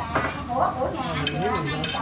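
Chopsticks and utensils clicking and scraping against dishes at a dinner table, with a couple of sharp clinks, one just after the start and one near the end.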